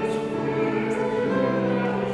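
A hymn sung by several voices with instrumental accompaniment, in slow held notes that change pitch every half-second or so.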